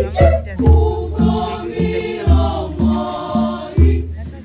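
A school choir singing in parts, with hand drums beating about twice a second under the voices.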